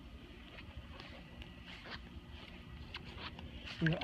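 Quiet outdoor ambience with a few faint soft ticks and rustles. A voice begins just before the end.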